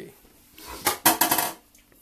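Kitchen utensils and containers clinking and knocking on a table: a quick cluster of clattering strikes, beginning a little under a second in and lasting about half a second.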